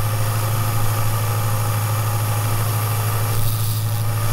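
Small bench sander with a narrow vertical belt running, giving a steady low hum. A fret's end is being rounded and deburred against the belt.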